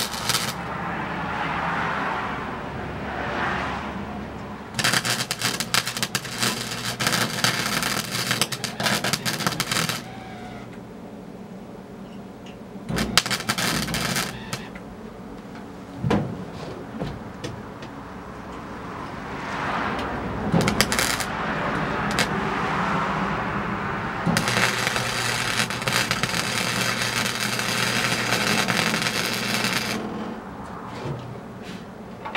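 A wire-feed (MIG) welder crackling and sizzling in several bursts of a few seconds each as beads are run on a steel truck frame, with short pauses between welds. In the pauses a smoother whoosh swells and fades.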